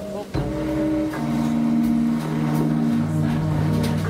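Live jazz band playing between vocal lines: a trombone holds long, steady low notes over a bass line, after a drum hit about a third of a second in.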